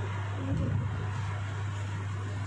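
Steady low electrical hum from a PA system picked up through the handheld microphones, with a soft low thump about half a second in.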